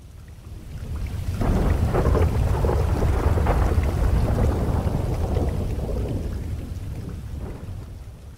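A long thunder rumble over steady rain: the deep rumble builds over the first couple of seconds, is loudest soon after, and slowly dies away.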